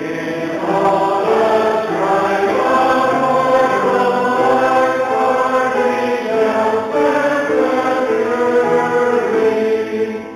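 Church congregation singing a hymn together with keyboard accompaniment, in slow, held notes; a sung line ends right at the end.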